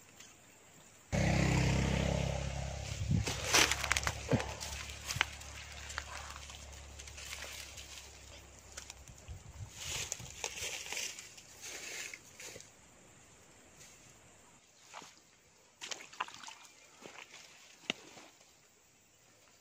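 Rustling and crackling in undergrowth with scattered knocks, over a low hum that starts suddenly about a second in and fades away over several seconds.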